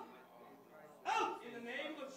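Short, sharp vocal bursts from a person: one about a second in, followed by a quieter run of shorter sounds, with no clear words.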